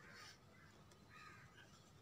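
Near silence: quiet room tone, with a faint bird call in the background about a second in.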